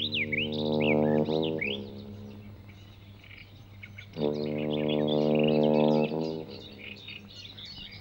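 Small birds chirping and tweeting throughout, with two long held notes of background music, each about two seconds, one at the start and one past the middle.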